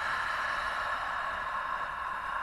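A woman's long, breathy exhale sighed out through the open mouth, a steady hiss that tails off slowly.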